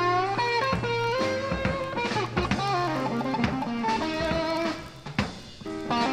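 Live blues band playing a slow blues: an electric guitar lead with bent notes over bass and drum kit.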